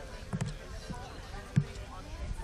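Faint voices of people talking in the background, with two dull thumps about a second apart; the second is sharper and louder.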